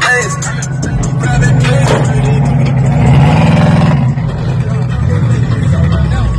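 A car engine running and revving, louder in the middle and easing off near the end, with music playing over it.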